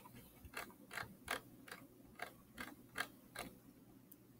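Computer mouse scroll wheel ticking as the page is scrolled: a faint run of short, irregular clicks, about three a second.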